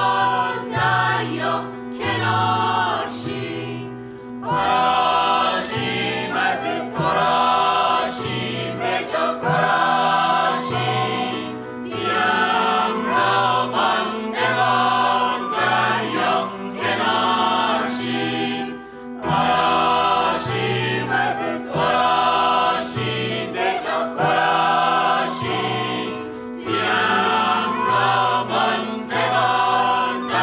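Mixed choir of men and women singing a Caspian coast folk song in full voice, accompanied by piano, over a low bass line whose notes change about once a second. The sung phrases come in waves with brief dips in between.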